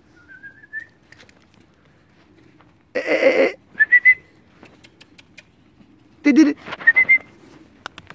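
Three short warbling whistles, the first rising in pitch, with two loud short cries, a little before the second and third whistles.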